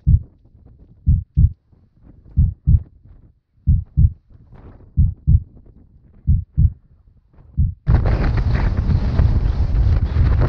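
Muffled low thumps in pairs, about one pair every 1.3 seconds, from a hiker walking a muddy path, carried through a body-worn camera. About eight seconds in they give way abruptly to loud wind buffeting the microphone.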